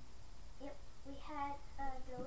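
A girl's voice singing a few short held notes, starting about half a second in.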